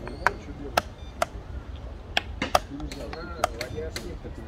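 Chess pieces being set down on the board and chess clock buttons being pressed in a fast game: about six sharp clicks over four seconds, irregularly spaced.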